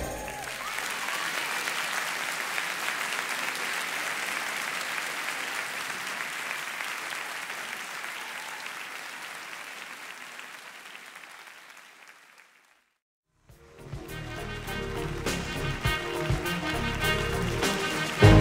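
Live concert audience applauding at the end of a song, the applause fading out gradually over about twelve seconds. After a moment of silence, an instrumental piece starts, with sharp percussive strikes.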